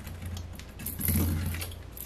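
Hand deburring tool's blade scraping around the rough edge of a freshly drilled hole in a quarter-inch acrylic (Lexan) plate, growing louder about a second in.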